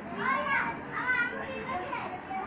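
Children's high-pitched voices calling out in two short loud bursts, about half a second and a second in.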